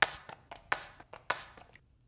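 Hand-held spray bottle of liquid hair texturizing spray spritzing into hair: three quick hissing sprays about half a second apart.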